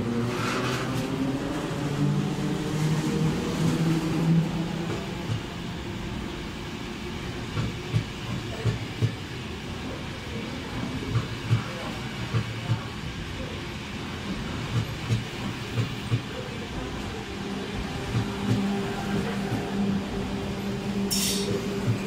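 ÖBB class 4020 electric multiple unit pulling out of a station close by, its motor hum rising in pitch over the first few seconds. Then a long run of wheel clacks over the rail joints as the coaches roll past.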